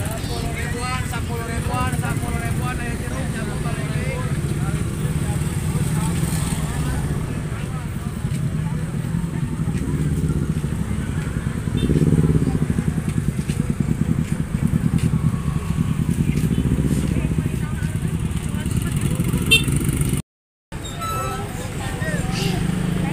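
Motor scooters running and riding slowly past through a crowded market lane, a steady low engine rumble under the chatter of people around; it swells louder about halfway through as a bike comes close.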